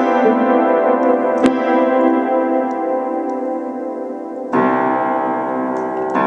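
Vintage 1937 upright piano played with mixed white and black-key chords built around C: held chords ring and fade, a short click sounds about a second and a half in, and a new loud chord is struck near the end.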